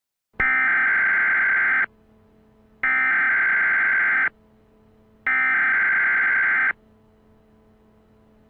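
Emergency Alert System SAME header: three bursts of digital data tones, each about a second and a half long and about a second apart, announcing an emergency broadcast.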